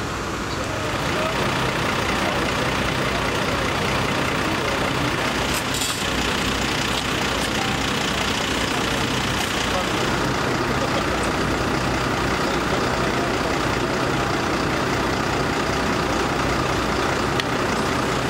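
Fire engines' diesel engines idling steadily, a constant low hum, with voices faintly in the background.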